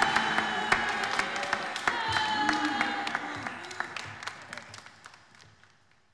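Audience clapping and cheering, with held musical tones over it; the applause dies away over the last couple of seconds.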